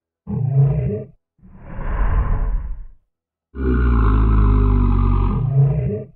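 Deep monster roar sound effects for a giant reptilian alien creature: a short growl, a second roar, then a longer roar of about two and a half seconds near the end, with dead silence between them.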